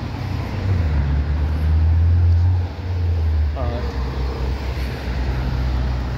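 Road traffic: cars passing close by, a steady low rumble with tyre noise that swells to its loudest about two seconds in and eases off just before the third second.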